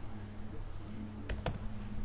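Two sharp clicks at a computer, a fifth of a second apart, about a second and a half in, over a steady low hum.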